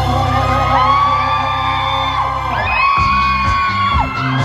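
Live pop song played loud through a hall sound system, its steady heavy bass beat breaking off about three seconds in, with long, high screams rising and falling over the music.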